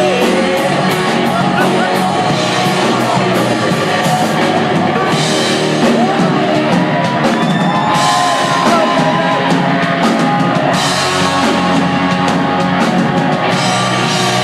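Live rock band playing loudly: electric guitar over a drum kit, with the cymbals crashing hard in stretches about five, eight and thirteen seconds in.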